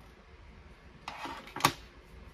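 Modelling tools being handled: a tool case is set down on the cutting mat with a short scrape about a second in, then one sharp clack.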